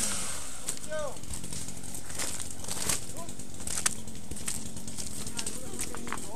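A chainsaw's two-stroke engine running steadily, with a couple of short shouts over it.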